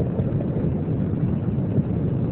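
Steady low rumble of Space Shuttle Columbia's rockets climbing during ascent, heard from the ground as an even roar without distinct pitch.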